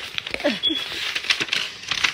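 Cardboard shipping box being pried and pulled open by hand: a run of sharp crackles, scrapes and rustles of the cardboard flaps and paper packaging.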